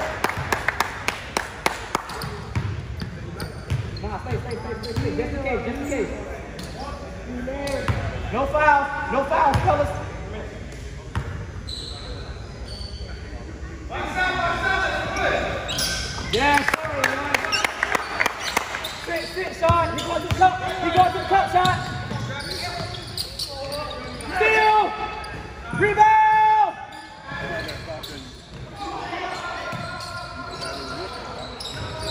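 Basketball bouncing on a hardwood gym floor during a game, among scattered knocks and voices calling out, in the echo of a large hall. A quick run of sharp knocks comes in the first two seconds, and the voices are loudest about 25 seconds in.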